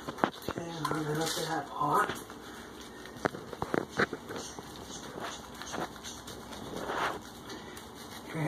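A hand rubbing shampoo into a cat's wet fur: soft rubbing and handling noise, with a few sharp clicks about three to four seconds in and a brief murmured voice near the start.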